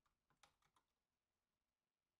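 Very faint computer keyboard typing: four or so quick keystrokes within the first second.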